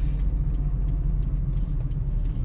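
Car engine and road noise heard from inside the cabin: a steady low rumble as the car drives slowly through a right turn.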